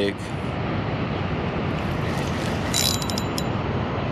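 Spinning reel's drag giving line in a brief run of quick metallic clicks about three seconds in, as a hooked striped bass pulls, over a steady rushing background noise.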